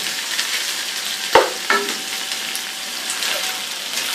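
Chicken pieces frying in hot oil in a cooking pot, a steady sizzle, with one sharp knock about a second in.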